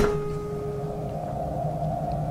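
Film soundtrack drone: a sharp hit, then a single held tone that fades out about a second in, over a steady low ambient drone.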